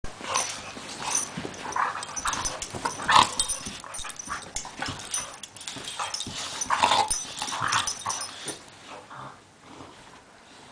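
A beagle mix and a pit bull play-fighting mouth to mouth, making a run of irregular dog play noises. They are loudest about three and seven seconds in and die down near the end.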